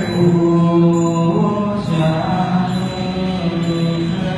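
A Buddhist mantra chanted on long, held notes over a musical backing.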